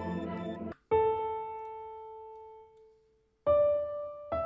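Roland SRX Piano 1 software instrument on its Classical acoustic piano patch, playing a slow line of single notes that each ring and fade. A fuller sound cuts off sharply just under a second in, then one note rings for about two seconds, and another note sounds near the end.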